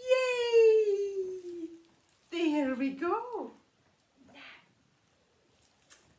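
A woman's voice making a long, smoothly falling vocal glide, the playful sound effect of a pretend rocket blast-off, followed about two seconds later by a short exclamation whose pitch dips and rises.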